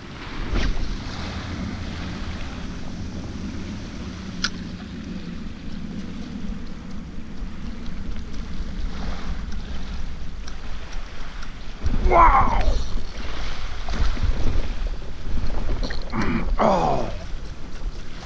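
Wind rumbling on the microphone over the wash of shallow water as a lure is retrieved, with a single sharp click about four seconds in. Two short falling pitched sounds come late, one about twelve seconds in and one about sixteen.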